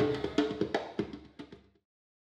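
Live acoustic band music dying away: hand-drum strokes over a ringing acoustic guitar, getting quieter until it stops about a second and a half in.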